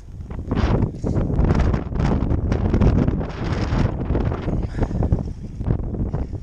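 Strong wind buffeting the microphone: a loud, low rumble that rises and falls in gusts.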